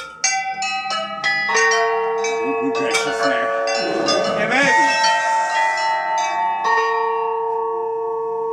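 Many bells ringing out at different pitches, struck one after another over the first few seconds and then left ringing. A bell was meant to ring just once, so the jumble is the shop's sign that this willow wand is not the right one.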